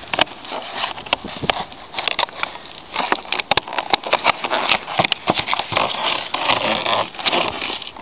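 Clear plastic packaging crinkling and crackling as it is gripped and handled, a dense run of irregular sharp crackles.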